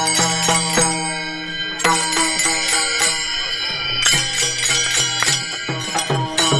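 Varkari bhajan music: brass taal hand cymbals struck in a brisk rhythm, each clash ringing on, over voices chanting on sustained notes. The clashes thin out about a second in and pick up again near the two-second mark.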